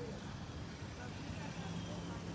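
An SUV's engine running at low speed as it rolls slowly past, a faint steady low rumble and hum.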